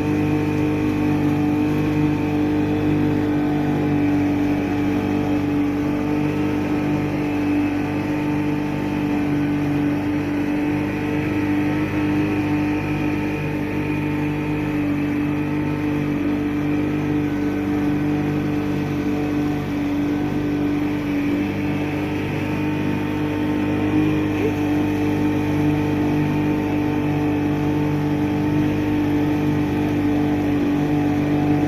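Small boat's outboard motor running steadily at cruising speed, a constant engine drone over the rush of water along the hull.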